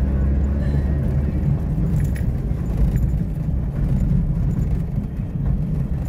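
Car cabin noise while driving on an unpaved dirt road: a steady, deep rumble of engine and tyres on the packed earth.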